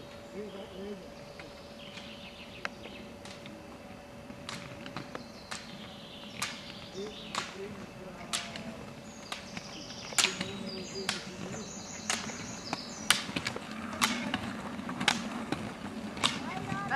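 Roller-ski pole tips clicking sharply on asphalt, about once a second, growing louder as the skier climbs closer.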